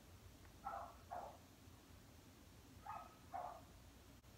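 Faint dog barking from a distance: two pairs of short barks, about a second in and again near the end, over near-silent room tone.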